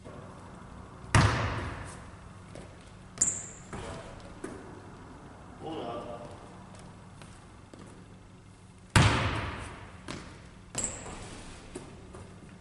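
A basketball bounced once on a hardwood gym floor, a loud thud that echoes through the large hall, followed about two seconds later by a brief high-pitched squeak of a sneaker stopping on the court. The same pattern comes again: a second loud bounce about nine seconds in, then another short squeak.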